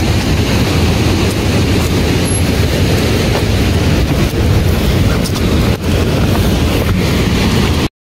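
Steady rushing noise, heaviest in the low end: wind buffeting an outdoor handheld microphone. It cuts off abruptly near the end.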